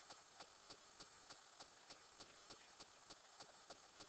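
Near silence: faint room tone with a faint, evenly spaced tick about three times a second.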